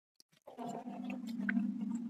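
A man chewing a mouthful of food with his mouth closed, with a low, steady hum for about a second and a half, starting about half a second in.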